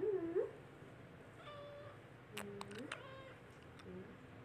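A cat meowing: three short meows about a second apart, with a few sharp clicks around the third.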